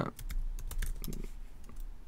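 Computer keyboard typing: a quick, irregular run of key clicks as a short terminal command (ifconfig) is typed and entered.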